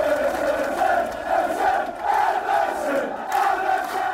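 A large football crowd chanting in unison, many voices holding a sung tune.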